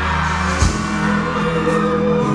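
Live reggae concert music: steady bass notes and held chords from the band, with a thud about half a second in and a held sung note near the end.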